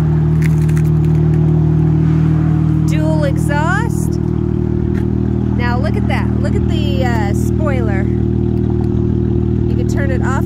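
Dodge Charger SXT's 3.6-litre V6 engine idling steadily.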